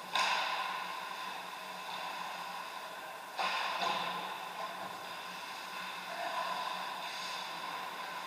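Ice hockey play echoing in an indoor rink: a wash of skating noise over a steady low hum, broken by two sharp knocks, one at the very start and one about three and a half seconds in.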